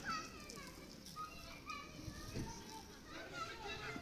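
A young child's high voice talking and calling out in short bursts.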